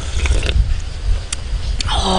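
A spoonful of octopus broth sipped from a metal spoon, a short slurp near the start, over a steady low rumble. Two faint clicks follow later on.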